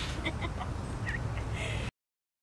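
A few short, high bird calls over steady outdoor background noise. The sound cuts off abruptly near the end.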